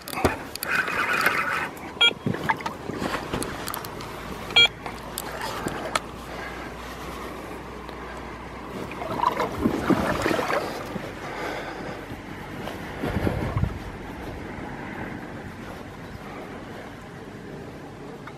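Handling noise from a camera close to a fishing rod and spinning reel while a hooked fish is played: rubbing and knocks, a short higher buzz about a second in, two sharp clicks, and heavier bumps near the middle and later on.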